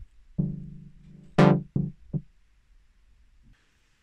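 Ableton Analog software synth playing a short phrase with its filter cutoff automated: a low held note, then a bright short note as the filter opens, then two shorter, duller notes as it closes again. The sound stops about two seconds in.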